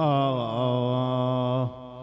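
A man's voice chanting a line of Arabic elegiac poetry in a slow, mournful melody. He holds the last syllable as one long note, with a waver at its start, and breaks off about a second and a half in, leaving a brief hall echo.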